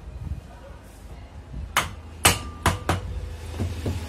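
Hammer striking metal parts of a ceiling fan motor: four sharp taps within about a second, starting nearly two seconds in, the second one leaving a brief metallic ring.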